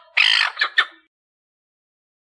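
A gull calling: one loud cry followed by two short clipped notes, ending about a second in.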